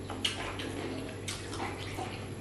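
Close-miked wet chewing and mouth smacks of a person eating fufu and okra stew by hand: a few short, irregular smacks, with a sharp click about a quarter second in.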